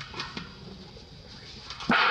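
Baby monkeys giving a few short faint squeaks, then a sudden loud harsh cry just before the end.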